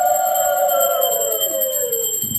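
Conch shell (shankha) blown in a long held note that sags in pitch and fades near the end, as the breath runs out.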